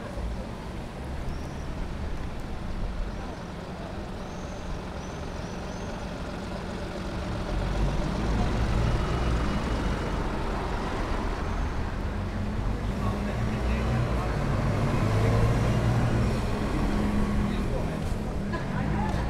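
A large motor vehicle's engine rumbling, growing clearly louder about eight seconds in and staying strong, with people talking around it.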